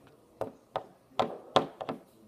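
About six short, sharp taps or knocks, unevenly spaced, the last three coming close together near the end.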